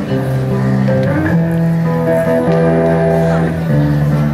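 Live band music led by guitars, holding sustained chords that change every second or so.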